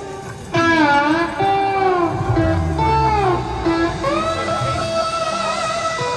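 Amplified guitar played with a slide, heard live through a concert PA: notes come in about half a second in and glide and bend up and down between pitches.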